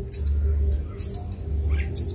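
Young, hand-reared sunbird chirping: three short, sharp, high-pitched calls spaced evenly, about one every second.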